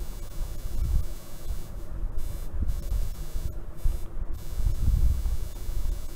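Stylus writing on an iPad's glass screen, picked up through the tablet as irregular low thumps and taps while a word is handwritten.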